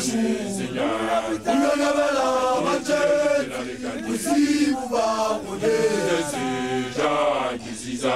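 Unaccompanied group chanting by makoloane, newly initiated Basotho young men, singing together in phrases with short breaths between them.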